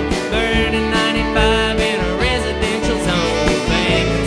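Live country band playing an instrumental passage between sung lines: fiddle and saxophone over electric guitars, bass and drums, with sliding lead notes over a steady beat.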